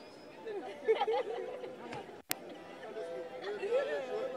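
Indistinct chatter of several people's voices, with no words clear. A single sharp click cuts in just over two seconds in.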